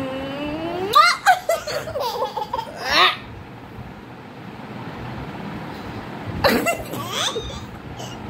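A woman and a baby laughing together in two bursts, one about a second in lasting to about three seconds and another near the end, with a long rising voice at the start.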